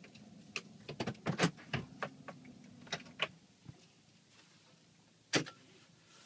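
Inside a moving car: a low steady hum, with a quick run of sharp clicks and knocks over the first three seconds and one louder knock near the end.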